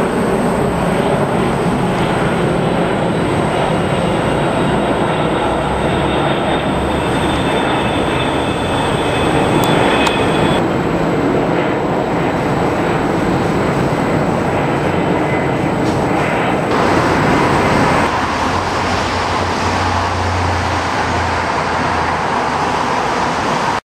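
Jet airliners passing overhead: steady jet engine noise with a low rumble, first from a four-engined Boeing 747, then from twin-engined airliners (an Airbus A330, a Boeing 777). The sound changes abruptly about ten seconds in and again twice near the end, as one aircraft gives way to the next.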